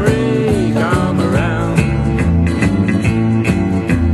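Country band music: guitar playing over bass and drums with a steady beat.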